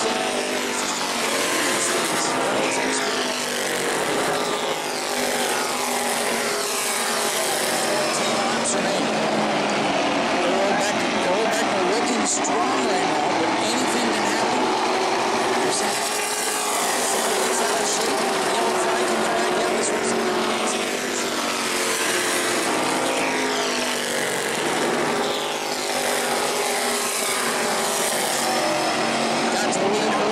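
Several E-Mod race car engines running around an asphalt oval, their pitch rising and falling again and again as cars pass and accelerate.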